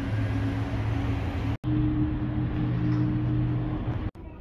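Steady low engine drone with a constant hum, broken off for an instant about a second and a half in.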